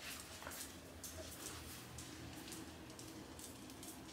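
Faint, irregular clicking of greyhounds' claws on a hard wooden floor as the dogs walk about.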